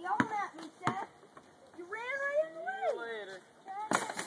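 A basketball bouncing twice on a concrete driveway near the start, as it is dribbled, then a child's voice with rising and falling pitch, and another sharp bounce right at the end.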